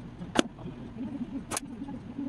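Slingshot shooting at a cardboard box target: two sharp cracks about a second apart, over a steady low hum.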